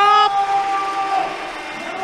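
A commentator's drawn-out shout as a goal is called, the last vowel held on one steady pitch and fading out after about a second.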